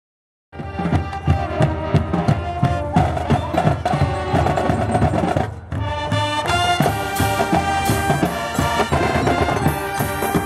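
High school pep band playing a brass-and-drum tune: snare and bass drums keep a driving beat under trumpets and a sousaphone. It starts about half a second in and breaks off briefly around the middle before going on.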